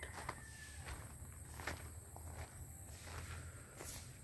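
Faint footsteps on a gravel path: a few irregular steps over a low, steady background rumble.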